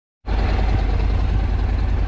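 Motorcycle engine idling steadily with a deep, even rumble.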